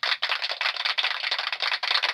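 Fast typing on a computer keyboard, a dense unbroken run of key clicks.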